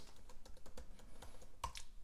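Computer keyboard keys tapped in a quick, irregular run of light clicks while a password is typed, with one louder click near the end as the login is submitted.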